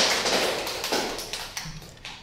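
A dense, rapid patter of clicks over a hiss, loud at first and fading away steadily over about two seconds.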